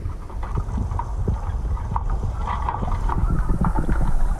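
Muffled underwater sound from a camera held below the water's surface: a steady low rumble of moving water with many small clicks and pops scattered through it.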